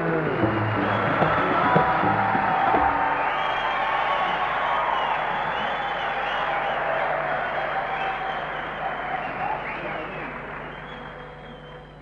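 Audience applauding and cheering, with a few whistles, as the live song's last notes end; the applause gradually dies away over the last few seconds.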